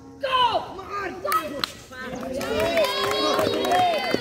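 Several young men's voices shouting and calling out during a kho kho game, growing into overlapping long calls in the second half, with two sharp smacks about a second and a half in.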